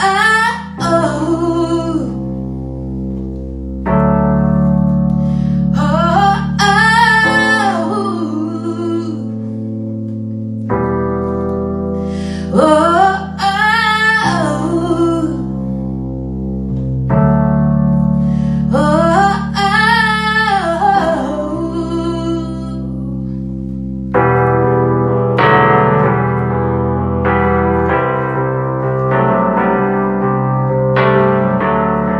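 A woman sings slow phrases over sustained chords on an electronic keyboard, with a pause of a few seconds between each phrase. Near the end the voice stops and the keyboard plays on alone with fuller, busier chords.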